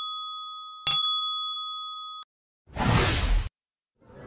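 Two bright ding chimes, a bell-like sound effect: the first rings on from just before, the second is struck about a second in and rings for over a second before cutting off. A short burst of noise follows near the end.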